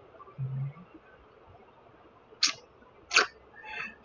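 A man sniffing at the neck of a glass soda bottle: a brief low hum near the start, then two short sniffs about two and a half and three seconds in.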